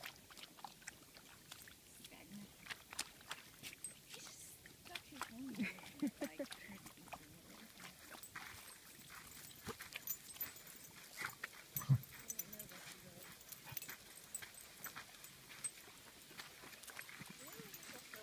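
A dog drinking at a pond's edge and moving about: faint repeated ticks and scuffs, with a low voice-like sound about a third of the way in and one louder thump about two thirds of the way through.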